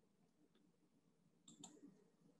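Near silence, with a couple of faint clicks near the end.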